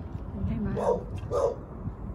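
A dog barking twice, about half a second apart.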